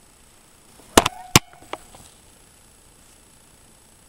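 Two sharp taps about a second in, less than half a second apart, with a faint brief squeak between them.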